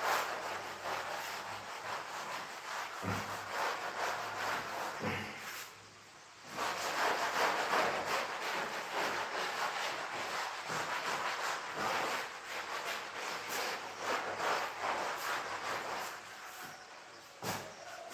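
A cloth being rubbed back and forth over a chalkboard to erase it: a rasping wiping sound made of quick strokes, with a brief pause about six seconds in, and fading toward the end.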